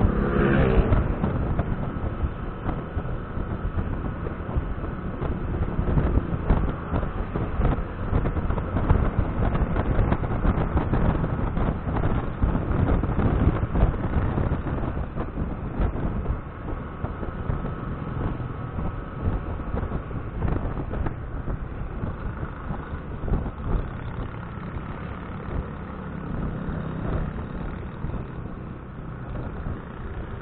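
Riding noise from a Yamaha scooter in traffic: steady wind rush on the microphone over the engine and tyre noise, easing as the scooter slows near the end. A brief pitched tone sounds in the first second.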